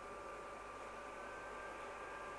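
Faint, steady background hiss with a thin, constant electrical whine: the recording's room and microphone noise.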